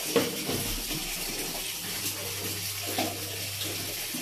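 Steady wash of running water with a few faint clicks and a low steady hum underneath.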